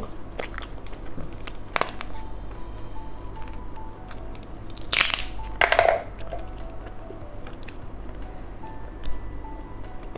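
A thin plastic candy capsule crackling and clicking as it is handled and pried open by hand, with louder crackles about five and six seconds in.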